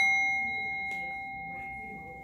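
A small metal bell, struck just before, rings on with one clear high tone and fainter overtones, slowly fading away.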